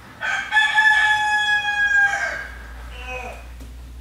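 A rooster crowing: one long held call, followed by a shorter, fainter falling call about three seconds in.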